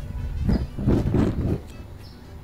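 Gas fire pit burner catching as the gas is turned up, with an uneven rush of flame that dies down after about a second and a half.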